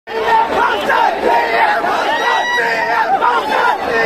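A large crowd shouting together, many voices overlapping loudly.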